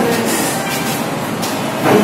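Steady noisy bustle of a group of people moving through a crowded hospital reception, with a few brief knocks and handling noises and a louder burst near the end.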